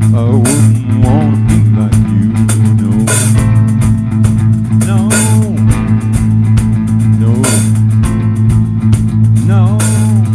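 Live rock band playing an instrumental passage: electric guitar bending notes over held bass notes, with cymbal crashes every two to three seconds.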